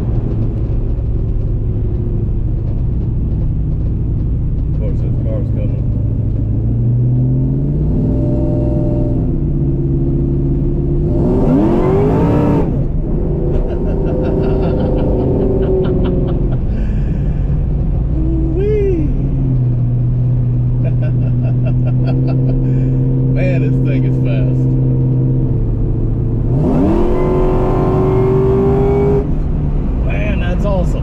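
Boosted Ford Mustang Mach 1 V8 heard from inside the cabin, cruising steadily, then twice opened up hard, about a third of the way in and again near the end, its note climbing fast each time. The full-throttle pulls under boost are a test of the upgraded fuel system, with fuel pressure holding steady.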